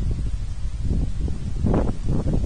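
Wind buffeting an outdoor microphone: a steady low rumble, with a short rustle about three-quarters of the way through.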